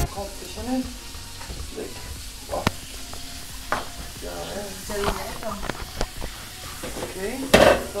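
Chopped tomatoes and chilies sizzling in a frying pan as they are stirred, with sharp clicks of the utensil against the pan every second or so and one louder knock near the end.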